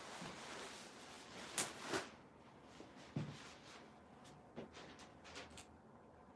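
Quiet handling of photo-studio gear: a soft rustle of fabric for about two seconds, then a couple of sharp clicks, a short low knock and a few faint ticks.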